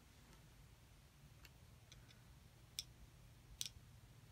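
Near silence: a faint steady low hum of room tone with a few small sharp clicks, the two loudest about three seconds in and near the end.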